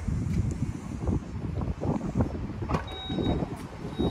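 Volkswagen Tiguan Allspace's hands-free power tailgate being triggered: low, irregular rumbling, then a short high beep about three seconds in and another at the very end as the tailgate unlocks and begins to open.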